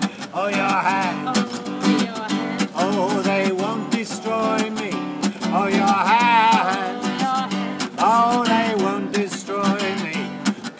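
Steel-string acoustic guitar strummed in a steady rhythm, with a man's voice singing a drawn-out melody over it.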